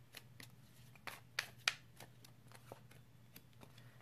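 Tarot cards being shuffled and handled: scattered light clicks and snaps of card stock, a few louder ones between one and two seconds in, over a faint steady low hum.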